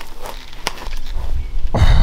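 A single sharp click about two-thirds of a second in, then a low rumble that grows louder. Near the end a man lets out a strained 'oh' as he hauls on the rope of a homemade weight-and-rope exercise.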